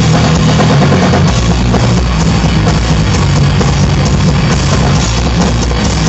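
Heavy metal band playing live, loud and unbroken: distorted electric guitar, bass guitar and a drum kit.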